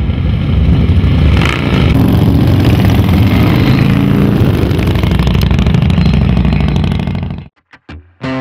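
A pack of cruiser motorcycles riding together, their engines revving, ending abruptly near the end.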